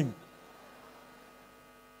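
Faint steady electrical mains hum, after a man's voice trails off at the very start.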